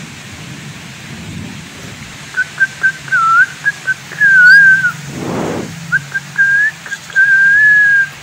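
Someone whistling near the microphone at a bird: a series of short chirps, then longer wavering and held notes.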